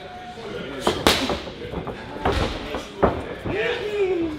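Boxing gloves striking handheld focus mitts in pad work: about five sharp slaps spread unevenly, the loudest about a second in.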